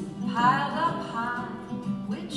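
Live swing-style song accompaniment: baritone ukulele and jazz archtop guitar playing together, with a melodic line, likely sung, rising and falling about half a second in.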